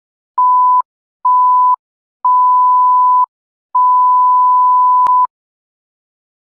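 Electronic beep tone at one steady pitch, sounded four times with dead silence between. Each beep is longer than the last, from about half a second to about a second and a half, and there is a click near the end of the last one.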